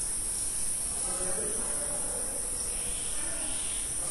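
Marker pen writing on a whiteboard, two soft scratchy strokes about three seconds in, over a steady high-pitched hiss.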